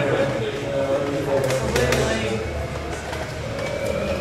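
Indistinct chatter of people talking among themselves in a crowded room, with a few sharp clicks about one and a half seconds in.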